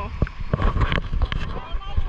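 Shallow sea water splashing and sloshing close to the microphone, in uneven splashes and knocks over a low rumble of moving water.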